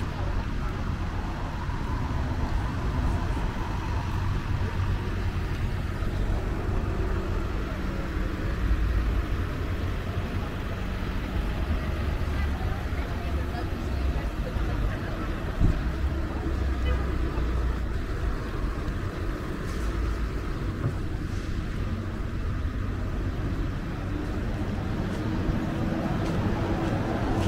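City street ambience: steady low traffic rumble with indistinct voices of passers-by, and one brief sharp knock about two-thirds of the way through.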